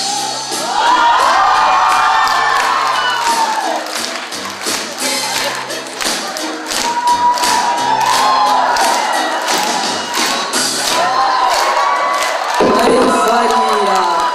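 Dance music with a steady beat, under an audience cheering and shouting in three loud waves: about a second in, around seven seconds, and again near the end.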